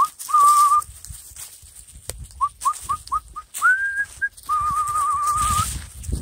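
A person whistling to call puppies: a short note, a run of quick short chirps, a rising note, then a long warbling note near the end.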